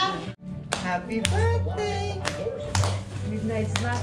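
Rhythmic hand clapping, about two claps a second, over voices and music, starting after a brief break in the sound just after the start.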